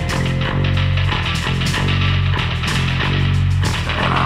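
Post-punk rock band playing an instrumental passage: a loud, repeating bass line under steady drums and guitar, with no singing.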